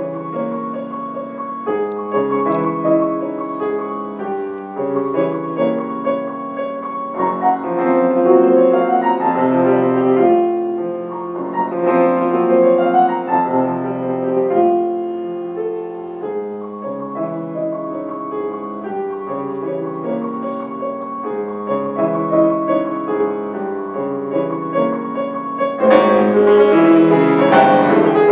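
Grand piano played solo: a continuous stream of overlapping notes and chords that swells to a louder, brighter passage about two seconds before the end.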